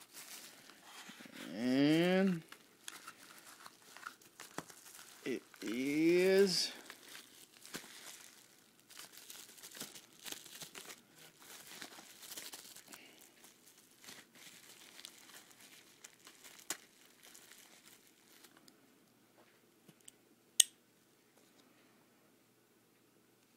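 Bubble wrap and plastic packaging crinkling and rustling as it is handled and pulled apart, with a sharp click near the end. Early on, two long, low vocal sounds a few seconds apart, each rising in pitch, are louder than the crinkling.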